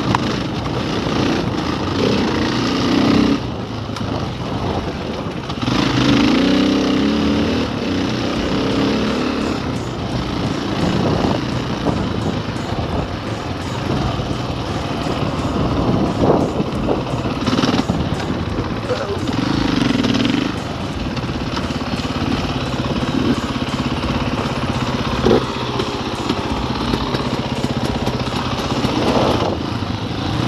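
KTM enduro dirt bike engine running at low trail speed, its pitch rising and falling with the throttle, over a steady rush of wind and rattle from the rough dirt track, with a few sharp knocks.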